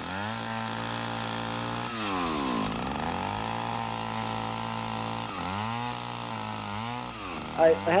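Chainsaw running, its pitch sagging and recovering about two seconds in and wavering again near the end as it cuts into the wood.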